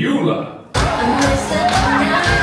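Show audio in a theater: a voice fades out, then about three-quarters of a second in a band number starts abruptly with a steady drum beat, roughly two beats a second.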